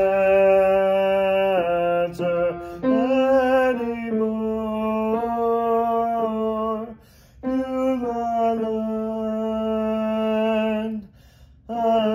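A man singing the tenor part of a gospel hymn in long held notes, pausing briefly for breath about seven seconds in and again near the end.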